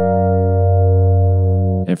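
A sustained chord, a major triad held over a low bass note, sounding steadily for about two seconds and cutting off near the end. The triad sits four half steps above the bass root, so together they give an augmented major seventh sound.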